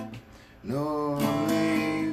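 Acoustic guitar being strummed. It falls quiet for a moment, then comes back in with chords and strums about two-thirds of a second in.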